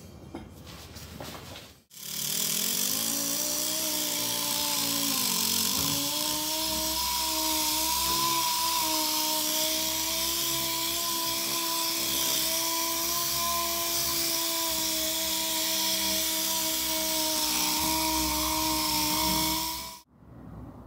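Orbital sander running steadily against a chrome handlebar with 320-grit paper, scuffing the chrome dull so paint will hold. It starts about two seconds in, its whine dips in pitch for a moment a few seconds later and recovers, and it stops abruptly at the end.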